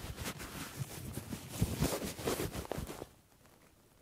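Shirt fabric rustling and brushing as a hand is pressed onto the collarbone, a soft irregular scratching; it cuts off abruptly about three seconds in, leaving dead silence.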